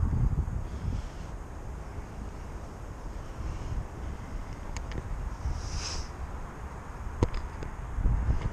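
Wind buffeting the camera's microphone, a steady low rumble, with a few sharp clicks late on.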